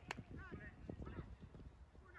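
Faint open-air sound of an amateur football pitch: distant shouts from players and a few soft knocks.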